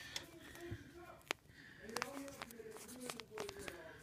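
Sharpie marker writing on a plastic zip-top storage bag, a string of faint short scratches and ticks as the bag is handled. Faint speech is heard underneath.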